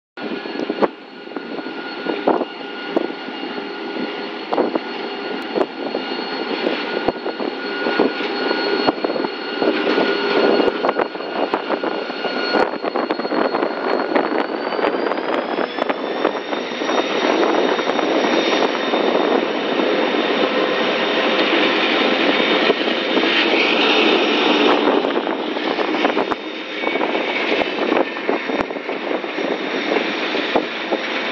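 EMD GT22 diesel-electric locomotive passing close by with a train of empty hopper wagons: the diesel engine runs with a steady high whine that rises in pitch about halfway through. The wagons' wheels then clatter and knock over the rails.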